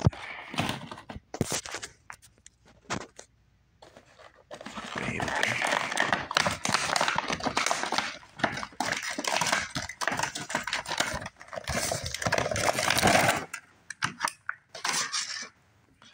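Action-figure box being opened by hand: scattered taps and clicks, then about nine seconds of continuous tearing and crinkling of cardboard and plastic packaging, ending with a few short bursts.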